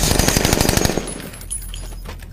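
Automatic rifles firing a rapid burst of gunfire in a film soundtrack. The shots stop about a second in, leaving a low steady rumble.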